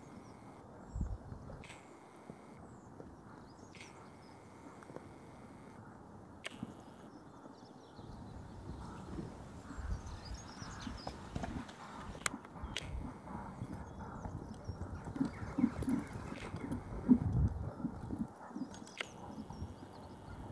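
A horse's hoofbeats as it trots on a sand arena, a run of soft thumps that grows louder about a third of the way in and is loudest near the end.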